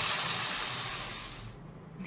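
Sliced onions frying in hot oil in a pan, sizzling with a steady hiss that fades and cuts off sharply about one and a half seconds in.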